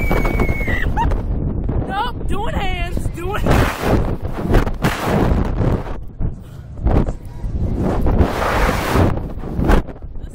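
Wind rushing and buffeting over the onboard camera's microphone as a slingshot ride's capsule swings and tumbles, coming in loud gusts over a steady low rumble. Riders' shrieks: a long high scream ends about a second in, then wavering cries follow.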